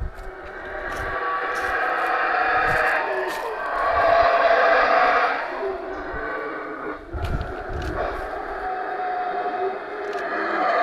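Yucatán black howler monkeys howling in a sustained chorus of long drawn-out calls that swell to their loudest a little before the middle and ebb and rise again.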